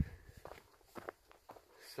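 Faint footsteps of a hiker walking on a dirt trail, a soft step roughly every half second.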